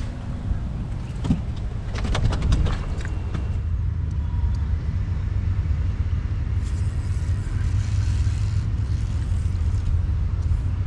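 Steady low rumble of wind buffeting the microphone, with a quick run of small clicks about two seconds in.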